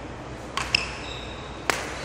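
Badminton rackets striking a shuttlecock in a rally: sharp, pinging hits about a second apart, some with a short ringing from the strings.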